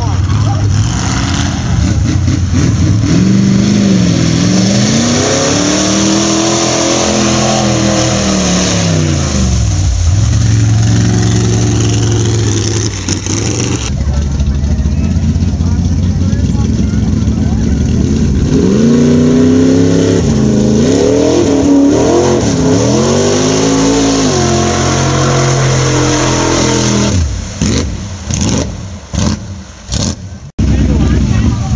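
Mud bog truck engine revving hard through the mud pit, its pitch sweeping up and falling back in long arcs, in two runs of revving with a steadier high-rev stretch between. The sound breaks up in choppy gaps near the end.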